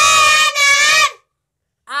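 A child's high voice singing a drawn-out note of an alphabet chant that stops about a second in. After a short silence the voice starts again near the end.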